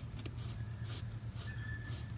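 Garden hose's threaded fitting being unscrewed from a travel trailer's city-water inlet: a few small clicks and scrapes over a steady low rumble. A short single-pitched bird note comes near the end.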